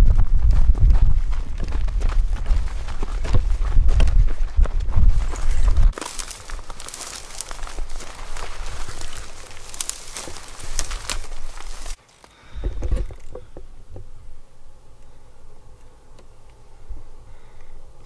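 Footsteps crunching over dry, rocky ground, with wind buffeting the microphone in a loud rumble for about the first six seconds. Then dry grass and brush crackle as the hunters move low through it. After an abrupt cut about twelve seconds in, only faint scattered rustling remains.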